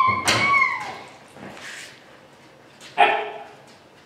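Puppy whining in high, drawn-out cries for about the first second, then one short sharp bark about three seconds in: a bark alert at the box where a person is hidden.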